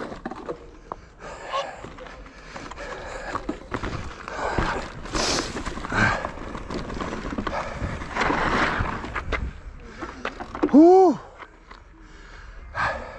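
Cube Stereo Hybrid 140 TM electric mountain bike rolling over rocky, gravelly trail: tyre noise on loose stone and the bike rattling, with irregular knocks. Near the end the rider lets out a loud sigh.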